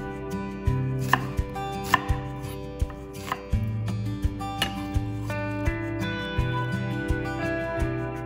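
Chef's knife dicing a peeled onion on a wooden cutting board: about a dozen sharp, irregularly spaced knocks of the blade hitting the board. Background music plays throughout.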